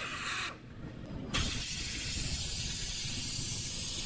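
Hot air plastic welder blowing a steady hiss of air, starting suddenly about a second and a half in. Just before it, a short hiss cuts off half a second in.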